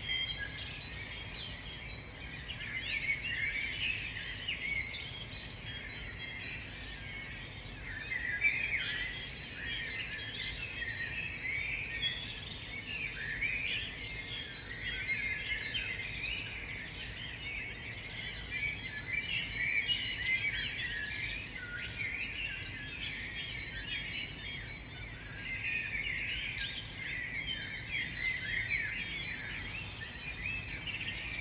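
Many wild birds chirping and calling at once, a dense chorus of short chirps and trills with a thin steady high tone behind them.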